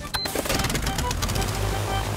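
Cartoon light propeller aeroplane engine starting up and running with a rapid, clattering putter.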